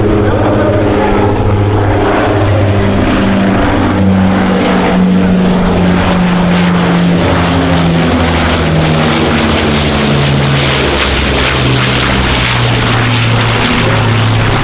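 Martin Mars flying boat's four Wright R-3350 radial engines and propellers passing low overhead: a loud, steady drone whose pitch drops from about eight seconds in as the aircraft goes over.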